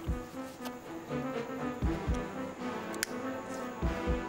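Dramatic background music: held, sustained notes over a deep drum beat that falls about every two seconds.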